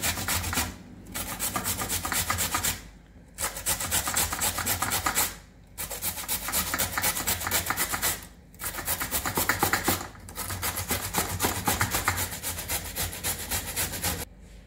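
White radish (mooli) being grated on a stainless steel box grater: quick, even rasping strokes in runs of two to three seconds, with four short pauses between runs.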